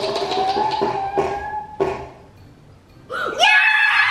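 A child's long held shout, rising slightly in pitch, with a few sharp knocks under it. After a short lull, loud excited voices come back near the end.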